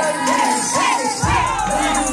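A group of women shouting and cheering together over loud dance music. A heavy bass comes into the music about a second in.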